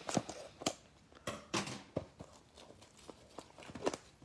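Scissors snipping open a trading-card pack's plastic wrapper and the cards being pulled out and handled: a string of short, irregular crisp clicks and crinkles.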